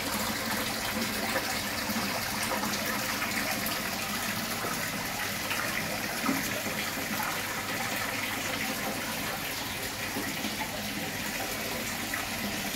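Water pouring steadily from a small spout into a garden fish pond, splashing on the pond surface.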